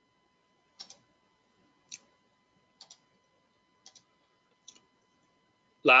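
Five short, sharp clicks, about one a second and slightly uneven, over a faint steady high-pitched electrical tone.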